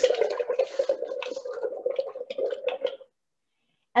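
Paintbrush swished hard in a glass jar of rinse water: steady sloshing with quick clicks, cutting off suddenly about three seconds in.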